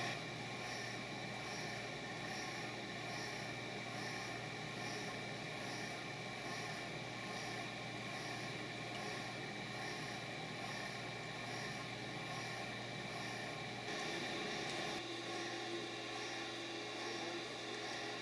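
Steady hum of running reef-aquarium equipment, its pumps and fans, made of several fixed tones, with a faint hiss that pulses about twice a second. A new low tone joins near the end.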